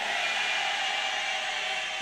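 Steady, even hiss of room tone with no speech or other events.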